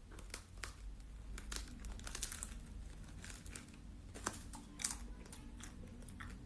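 Close handling noise on a phone microphone: irregular rustling and crackling with scattered sharp clicks over a low rumble. The loudest clicks come a little after two seconds in and near five seconds in.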